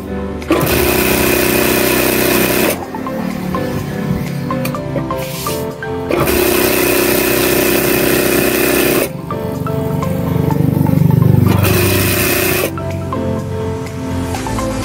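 Industrial sewing machine running in three bursts as it stitches a fabric belt through a binder attachment: two runs of about two to three seconds each and a shorter one near the end, with background music underneath.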